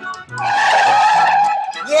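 Car tyres screeching as the car brakes hard, a sound effect about a second and a half long over music.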